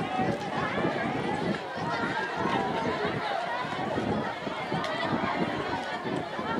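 A crowd of schoolchildren talking and calling out at once, many voices overlapping into a steady babble.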